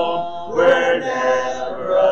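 A church congregation singing a hymn a cappella, voices together in held notes with a man's voice leading. There is a short break for breath between lines about half a second in.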